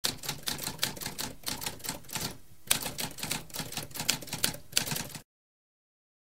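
Mechanical typewriter keys clacking in a fast, uneven run of strokes, with a brief pause about halfway through; the typing stops about a second before the end.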